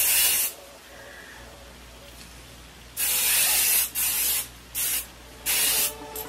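Aerosol can of Salon Grafix Freezing Hairspray Mega Hold spraying in short hissing bursts: one burst ends about half a second in, then after a pause come four more, the first about a second long and the others shorter.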